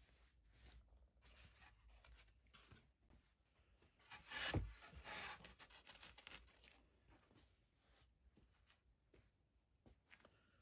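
Faint rubbing and swishing as sawdust is swept off a wooden wing skin around a freshly routed servo well, with one louder swish about four and a half seconds in.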